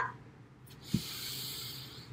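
A woman breathing out in a long hissing breath through her nose, with a soft knock just as it swells about a second in.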